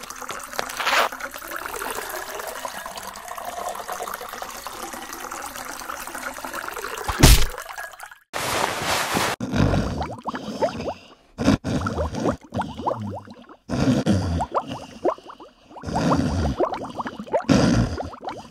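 A steady trickle of a urine stream into a urinal, played as a cartoon sound effect. About seven seconds in there is a loud thump and a short rush of noise, then rhythmic snoring, a breath every second or two.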